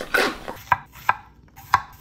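Chef's knife slicing a cucumber into coins on a wooden cutting board: sharp separate chops about half a second apart, starting less than a second in.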